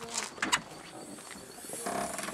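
Car boot lid being unlatched and opened: sharp latch clicks about half a second in, then a brief rush of noise near the end as the lid comes up.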